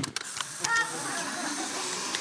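Instant camera taking a picture: a shutter click, then its motor whirring steadily for about a second and a half as it pushes out the print.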